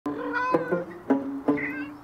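A kitten meowing twice over background music with plucked guitar notes.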